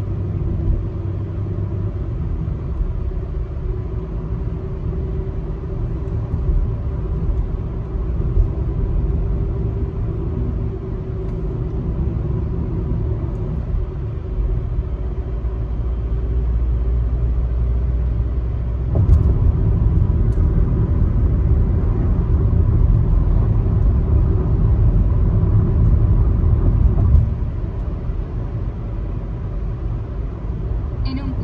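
Car driving on a country road, heard from inside the cabin: a steady low rumble of road and tyre noise. About two-thirds of the way through it turns suddenly louder and rougher for several seconds, then drops back near the end.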